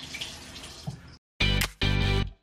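Water running from a bathroom tap for about a second, cut off suddenly. Background music then starts, in short separate phrases.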